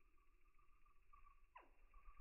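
Near silence: a faint steady high hum, with one quick falling tone about one and a half seconds in.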